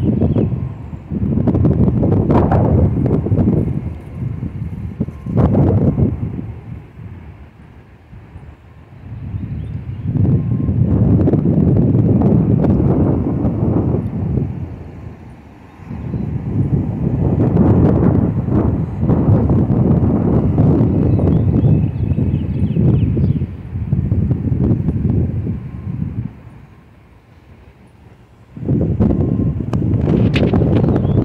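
Wind buffeting the microphone in loud, irregular gusts of low rumble, dropping into short lulls three times.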